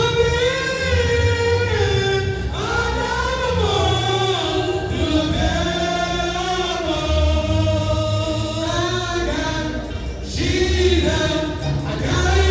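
Gospel music with several voices singing together in a long, flowing melody over deep bass notes.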